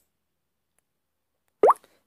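Silence, then about one and a half seconds in a single short mouth pop with a quick upward sweep in pitch.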